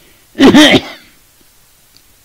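An elderly man gives one short, harsh cough about half a second in.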